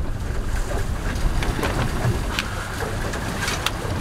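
Steady wind buffeting the microphone over choppy sea water around a small boat, with a few light knocks and clicks.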